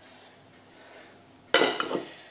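Kitchenware clinking: a sudden, brief clatter about a second and a half in, after a quiet start of faint room tone.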